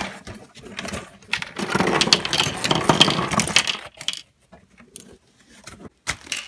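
Loose LEGO pieces clicking and rattling inside a plastic zip-lock bag as it is handled, with the bag crinkling; busiest for about two seconds, then a few scattered clicks.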